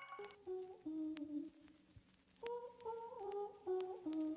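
A voice humming a slow melody alone, without accompaniment, in two phrases with a pause of about a second between them.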